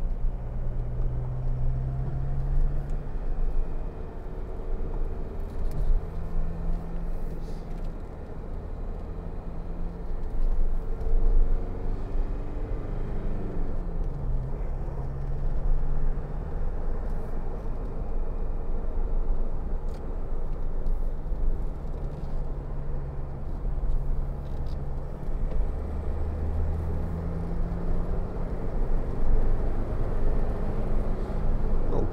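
A 2009 Jeep Wrangler Unlimited's 2.8 CRD four-cylinder turbodiesel heard from inside the cabin while driving, with a steady engine drone over road and tyre rumble. About 13 seconds in the engine note drops sharply in pitch at a gear change.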